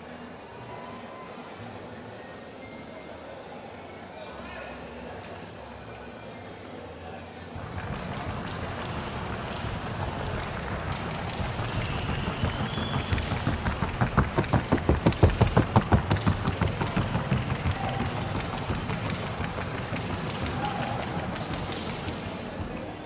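Hoofbeats of a Colombian trocha mare moving at the trocha gait, a fast even run of sharp strikes on a hard track. They grow louder from about eight seconds in and are loudest for a few seconds past the middle.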